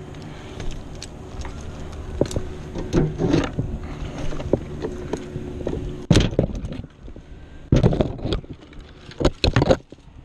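Climber's hands, rope and climbing gear knocking and scraping against oak bark and branches close to a helmet camera, with sharp knocks loudest in the last four seconds. Under it for the first six seconds there is a steady low hum.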